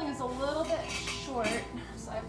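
Sheet-metal double-wall stovepipe clattering and scraping as it is handled. Two squealing metal scrapes bend up and down in pitch, one near the start and one past the middle.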